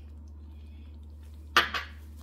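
A single short clatter of kitchenware about one and a half seconds in, over a steady low hum.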